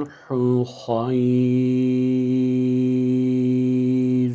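A man reciting the Quranic phrase "wa's-sulhu khayr" in tajweed style. He gives two short syllables, then holds the final syllable on one steady pitch for about three seconds.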